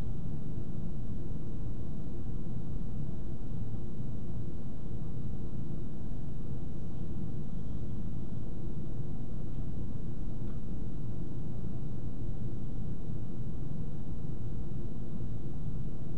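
A steady, low rumbling noise that holds at one level without a break.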